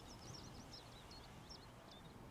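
Faint song of a small leaf warbler: a run of short, high, chirping notes over quiet open-air background.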